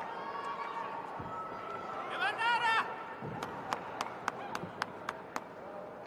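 Voices of an arena crowd during a taekwondo bout. A loud, high-pitched shout comes a little after two seconds in. It is followed by a quick run of about nine sharp cracks over about two seconds.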